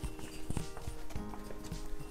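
Footsteps of a few people walking, a handful of separate steps, with faint steady music underneath.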